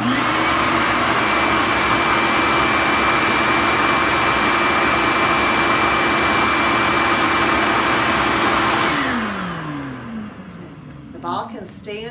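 Shop-Vac wet/dry vacuum switched on, its motor running loud and steady with a constant whine while blowing air out of the exhaust port. About nine seconds in it is switched off and the motor spins down with a falling whine.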